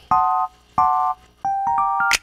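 Background music on a keyboard with an electric-piano sound: two short matching chords, then notes entering one after another and building upward into a held chord.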